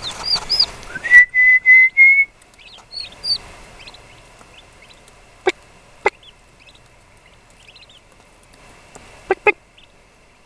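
Two-day-old eastern wild turkey poults peeping: short high chirps, loudest in the first few seconds, with a run of four loud, level whistled notes about a second in, then fainter scattered peeps. A few sharp taps come about halfway through and twice near the end.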